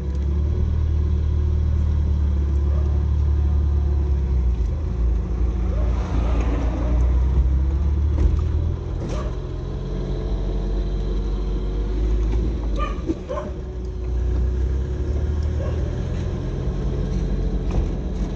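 Steady low rumble of a vehicle's engine and road noise heard from inside the cabin while driving, with a few faint brief sounds over it.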